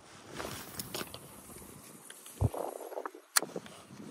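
Spinning rod and reel handled after a cast. A sharp click about three seconds in, typical of the reel's bail arm being snapped shut, comes shortly after a low thump, over faint outdoor noise.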